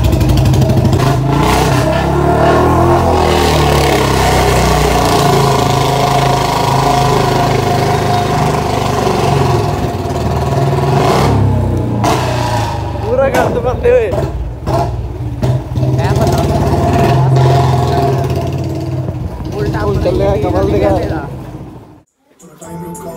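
Motorcycle engine running steadily while the bike is ridden. Voices come in briefly about a third of the way through and again near the end, and the sound cuts off abruptly at the close.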